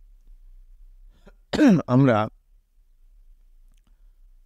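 Speech only: a man says a single Bengali word between pauses, with quiet before and after it.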